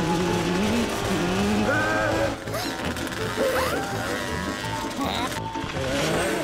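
Cartoon soundtrack: background music under wordless squeaky character voices and sound effects.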